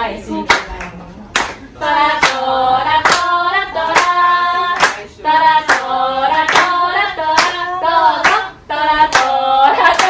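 Singing of a Japanese party-game song kept in time by steady hand clapping, about two to three claps a second, breaking off briefly a few times.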